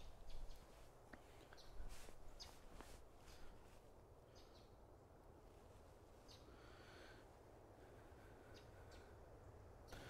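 Near silence: faint outdoor background with a few soft rustles and clicks in the first few seconds, and a faint bird call about six and a half seconds in.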